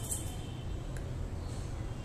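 Steady low hum with a single faint snip of grooming scissors cutting a dog's coat about a second in.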